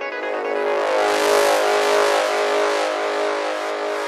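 Psygressive trance intro: a whooshing noise sweep swells up and fades away over held synth tones, with no kick drum or bass yet.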